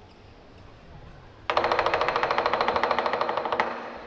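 Lion dance percussion breaking into a fast roll about one and a half seconds in, a dozen or more even strikes a second with a metallic ring, cut off shortly before the end.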